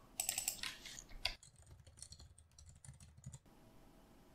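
Faint typing on a computer keyboard: a quick run of keystrokes in the first second or so, then a few scattered, fainter key taps.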